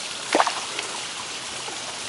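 Shallow river water running and trickling over rocks at the bank, with one short splash about a third of a second in.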